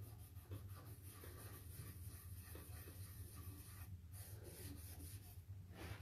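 Faint scratchy rubbing of a lightly abrasive finishing pad scrubbing over silver leaf on painted furniture, stripping the leaf from spots with no adhesive beneath so the stencil pattern shows. There is a brief pause about four seconds in.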